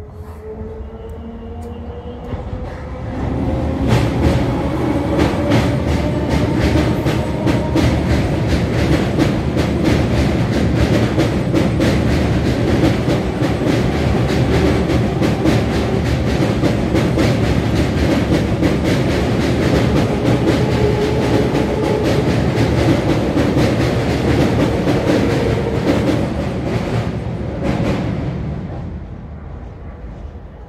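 Electric suburban local train (EMU) crossing a steel truss rail bridge overhead. A loud, steady rumble and rapid wheel clatter on the steelwork builds over the first few seconds, holds, then fades near the end as the train clears the bridge. A faint rising whine can be heard in the first several seconds.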